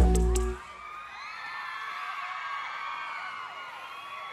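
A pop song ends on a final accented hit that rings out for about half a second. Then a large crowd of fans screams and cheers, many high voices together, more quietly than the music.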